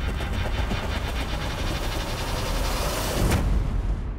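Trailer score and sound design: a dense, rumbling swell with a sharp hit about three seconds in.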